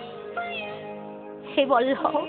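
Kirtan accompaniment with steady held notes, then a short, loud voice with a sharply swooping pitch about one and a half seconds in.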